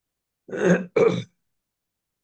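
A person clearing their throat in two short bursts, about a second in.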